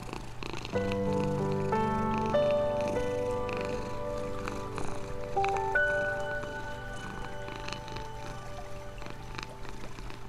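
A domestic cat purring steadily under slow, calm relaxation music of long held notes, with new notes coming in about a second in and again a little past the middle.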